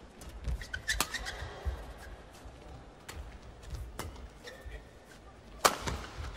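Badminton rally: rackets striking a shuttlecock in an irregular exchange of sharp hits, with a few short squeaks of shoes on the court mat. The loudest, hardest hit comes about a second before the end.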